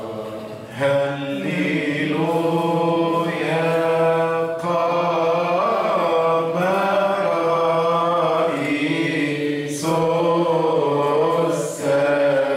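A solo male voice chanting a Coptic church hymn into a microphone, holding long notes that bend slowly up and down. One phrase starts about a second in, and a fresh one begins near the end after a short breath.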